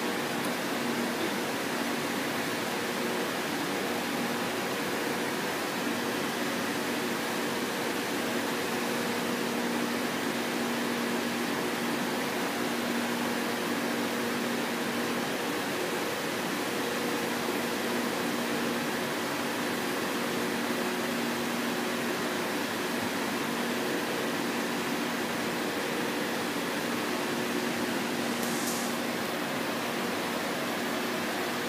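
Steady background hum and rushing noise with a few faint, steady low tones underneath. A brief high hiss comes near the end.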